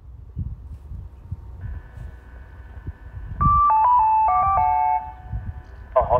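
Station public-address horn loudspeaker sounding a short electronic attention chime of several notes, the signal that opens a platform announcement. A faint steady hum from the loudspeaker comes on about a second and a half before the chime.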